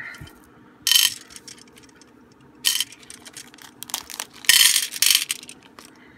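Small round beads clattering into a small clear plastic tray in three short bursts, the last one longer, with a few light clicks in between.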